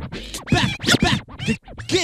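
Vinyl record being scratched by hand on a turntable and cut in and out with the mixer's fader: quick chopped sweeps of pitch, rising and falling, with the backing beat faint underneath.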